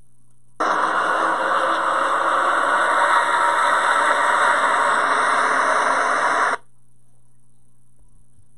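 Race-start video played through laptop speakers: a loud, distorted rush of noise from the pack of NASCAR stock cars at full throttle after the green flag. It starts abruptly about half a second in and cuts off suddenly about six seconds later.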